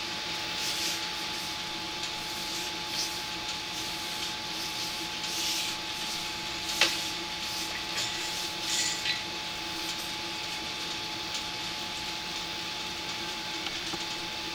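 Steady hiss with a constant electrical hum and whine from a sewer inspection camera rig, with a few faint ticks and one sharper click about seven seconds in as the camera is pulled back through the pipe.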